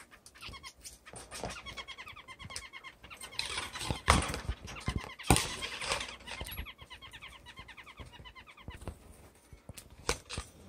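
Small cage birds singing fast trills of short chirping notes, twice, with a rustling stretch and two sharp knocks in the middle.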